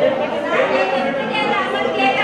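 Several people talking at once: overlapping, indistinct chatter of voices in a meeting hall.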